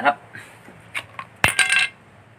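Metal spoon set down on a concrete floor: a light tap about a second in, then a sharp metallic clink with a brief ring.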